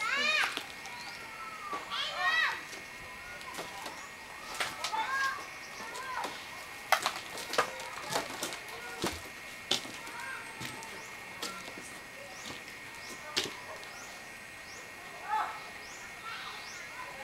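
Scattered clicks and knocks of someone moving about a cluttered, earthquake-damaged room, over a steady high-pitched drone. Two brief high calls that rise and fall come near the start.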